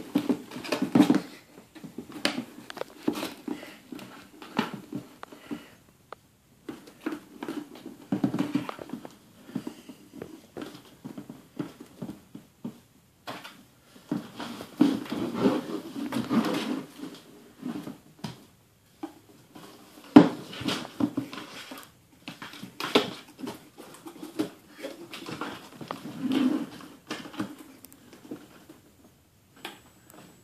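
Cardboard beer case being handled, with irregular scratching, rustling and knocking on the box and a few short pauses.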